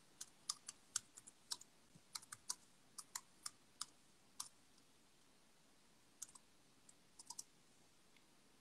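Faint, irregular clicks of keys being typed while a message is written: a quick run of about sixteen keystrokes, a pause of a couple of seconds, then a few more.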